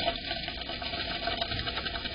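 A tree swallow fluttering its wings inside a wooden nest box, a fast, dense rattle of wingbeats and rustling against the grass nest and the box walls. It starts suddenly at the start and keeps going through the two seconds.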